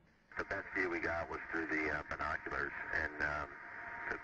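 A voice talking over a space-to-ground radio link, starting a moment in, with the narrow sound of a radio transmission.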